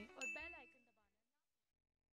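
A single bright bell ding, the sound effect of a notification-bell icon being clicked, about a quarter second in, with a faint fading jingle; both die away within the first second.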